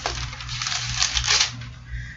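A quick run of light clicks and clatter from something being handled on a desk, densest in the first second and a half, over a steady low electrical hum.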